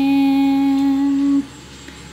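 A person's voice drawing out one long sung "and…", sliding up in pitch at first, then held steady until it stops about one and a half seconds in.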